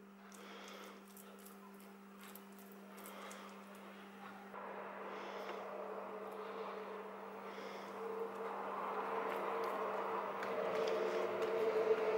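Faint handling sounds as minced-meat filling is spooned onto thin dough and the dough is folded over by hand, over a steady low electrical hum. A soft noise grows louder from about halfway through.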